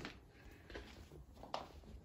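A child's faint footsteps walking: a few soft taps in an almost quiet room, the clearest about one and a half seconds in.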